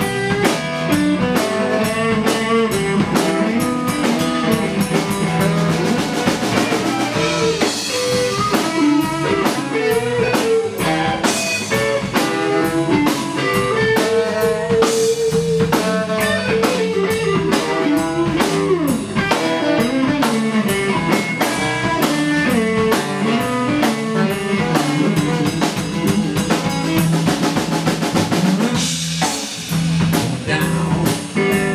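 Live band music: electric guitars playing over a drum kit, with no break.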